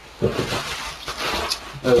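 Polystyrene packing rustling and crackling as hands dig through it inside a cardboard box.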